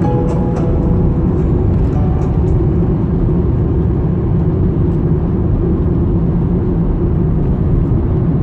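Steady low rumble of a car driving on a road, heard from inside the cabin: engine and tyre noise at an even level. The tail of a piece of music fades out in the first two or three seconds.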